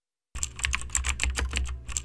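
Computer keyboard typing sound effect: a quick run of key clicks, about eight a second, starting about a third of a second in, over a low steady hum.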